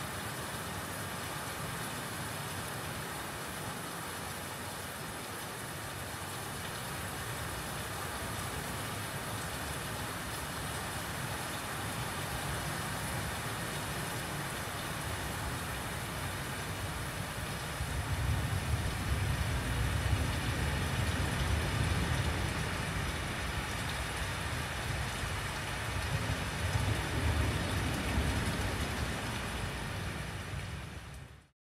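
Steady static-like hiss across the whole range, with a low rumble that swells about 18 seconds in and again near the end.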